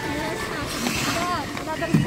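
Crowd of skaters on an ice rink: a steady hiss of skate blades scraping the ice mixed with a background hubbub of voices, with a few short calls about halfway through.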